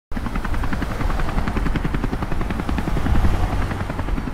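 Helicopter rotor chopping in a fast, steady rhythm over a deep rumble, starting abruptly at the very beginning.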